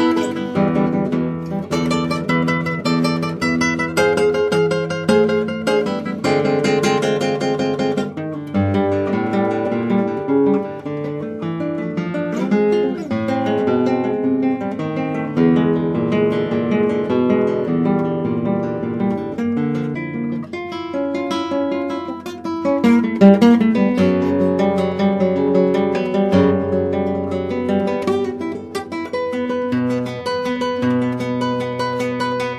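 Solo acoustic guitar playing a sonata movement: plucked melodic lines with full struck chords, several near the start and a loud accent about two-thirds of the way through.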